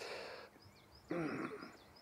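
A person's breathy exhale, then about a second in a short, low, breathy voiced sound. Faint high bird chirps repeat behind.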